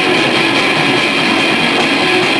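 Live rock band playing loud with electric guitars, heard as a dense, steady wash of sound with no clear beat.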